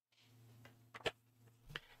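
Near-silent pause: faint room tone with a low hum, and a sharp soft click about a second in.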